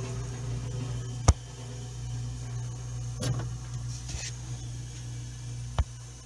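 Mini refrigerator compressor running with a steady low hum, started again on a new PTC start relay. A sharp knock comes about a second in and a smaller one near the end, with a brief handling rustle around three seconds in.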